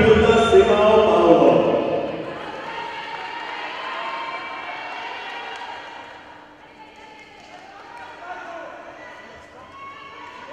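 A handball bouncing on the hard floor of an indoor court among voices in a sports hall. The voices are loud for the first two seconds, then drop to a lower murmur.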